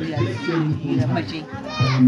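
Speech only: a woman talking, with children's voices and background music behind.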